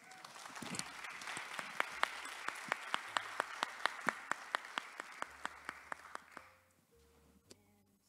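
Audience applauding, with one person's claps standing out, sharp and regular at about four a second. The applause dies away about six and a half seconds in.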